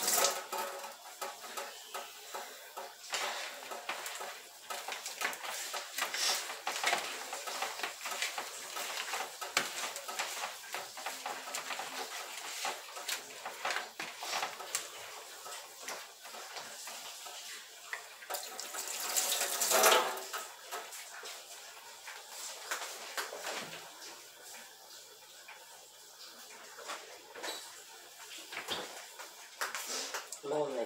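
Water running from a kitchen tap and splashing in a steel sink while hands work pieces of chicken in a plastic bowl, with frequent small knocks and clatter. A louder rush of water comes about two-thirds of the way through.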